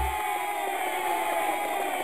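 Several voices holding one long sung note together at the end of a theme song. The low bass backing cuts off just after it begins.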